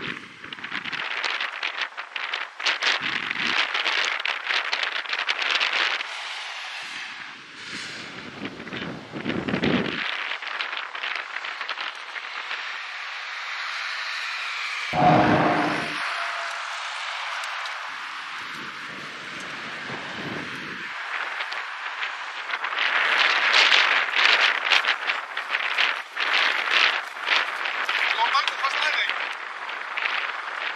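Wind buffeting the microphone beside a main road, with road traffic passing. Low rumbling gusts come at intervals, the strongest about halfway through.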